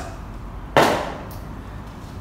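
Plastic marker cones put down hard on a tiled floor, making one sharp clatter a little under a second in.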